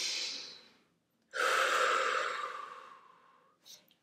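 A woman's deep breath: a short inhale through the nose at the start, then, after a brief pause, a longer and louder exhale through the mouth that fades out over about two seconds.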